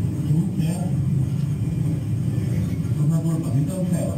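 Film soundtrack played over auditorium loudspeakers: a van's engine rumbling steadily inside the cabin, with brief bits of dialogue over it.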